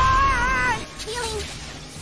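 A cartoon character's high, wavering cry lasting under a second, followed by a few faint short vocal sounds.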